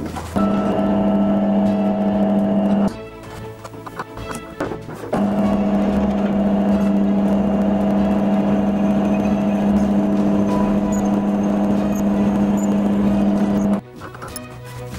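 Bench drill press motor running with a steady hum as it drills a hole through a small slice of iron meteorite clamped in a vise. It stops after about three seconds, starts again about two seconds later, and cuts off just before the end.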